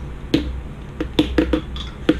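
Lip smacks and tongue clicks of a mouth tasting a spoonful of baby food: about six short wet clicks, several bunched together about a second in, over a faint steady low hum.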